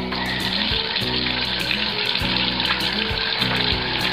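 Water running from a bathtub faucet into the tub, a steady hiss, over background music.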